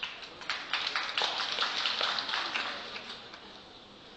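A quick, irregular flurry of sharp clicks and taps that builds about a second in and fades out by about three seconds.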